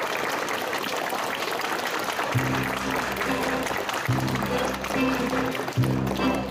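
Audience clapping, and about two seconds in a small string band with violins starts playing, its low notes held and repeated over the continuing applause.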